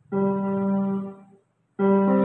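Yamaha electronic keyboard playing two chords. The first is held about a second and released, then after a short gap the second is struck near the end.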